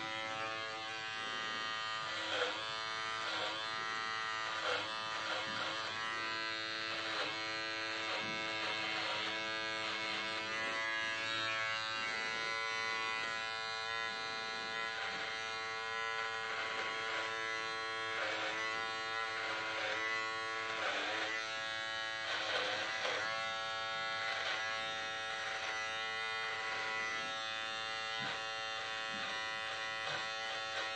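Handheld electric beard trimmer, switched on at the start, buzzing steadily as it cuts through a thick beard and moustache. Its pitch dips briefly again and again as the blades bite into the hair.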